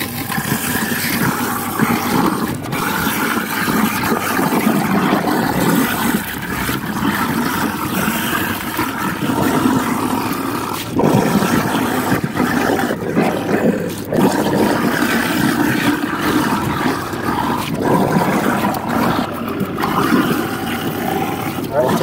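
Three-quarter-horsepower two-stage InSinkErator garbage disposal running under load, grinding rotting fruit and vegetable scraps with water into pulp. The grinding noise is loud and rough, changing texture as scraps are pushed into the drain, with a few brief dips.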